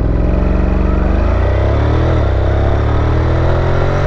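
Honda NC700X's 670 cc parallel-twin engine, through an aftermarket Akrapovic exhaust, pulling at full throttle with its pitch rising. The pitch drops about two seconds in as the DCT dual-clutch gearbox shifts up by itself, then starts climbing again.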